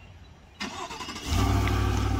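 A vehicle engine running with a steady low rumble that sets in loudly just over a second in, after quieter street noise.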